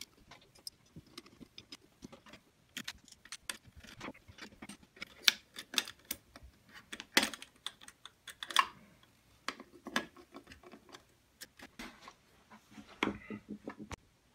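Irregular small clicks and taps as the metal standoffs and copper work coil of an induction heater board are handled and knocked against the board and its finned heatsink, with a few sharper clicks about five, seven and eight and a half seconds in.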